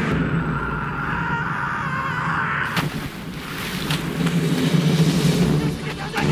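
Army cargo truck convoy's engines running as the trucks drive along, a dense steady rumble, with a sharp knock about three seconds in.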